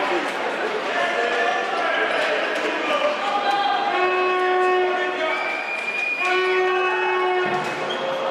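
A handball bouncing on a sports-hall floor amid crowd voices, echoing in the large hall. From about halfway in, steady held tones lasting a second or two each sound over it.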